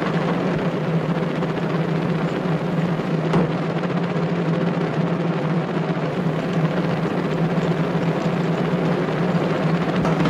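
A steady, unbroken drum roll with a low, timpani-like pitch.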